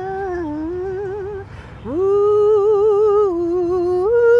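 A woman singing a melody without accompaniment and without clear words, in two phrases of long held notes with vibrato. After a short break a bit before halfway, the second phrase begins with an upward slide.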